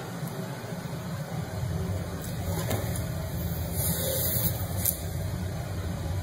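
Steady low background hum, with a few faint clicks and a short hiss about four seconds in.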